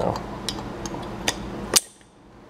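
Steel locking pliers being handled on a steel motor-mount bracket: a few light metallic clicks, then one sharp, louder click near the end as the pliers are worked loose.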